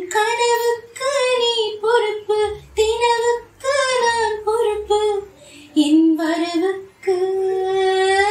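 A woman singing a Tamil film song solo, in held, ornamented phrases broken by short breaths.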